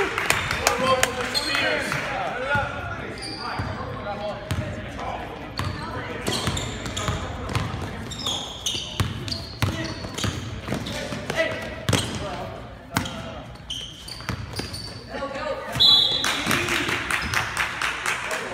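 Basketballs bouncing on a hardwood gym floor during a game, with short sharp thuds, among the overlapping voices of players and spectators in the echoing gym.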